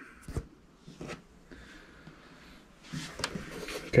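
Handling noise: a few light clicks and knocks, then a short rustle with more clicks about three seconds in, as hands move the metal case of a bench power supply.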